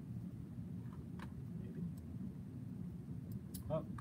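A few isolated computer mouse clicks over a steady low room hum.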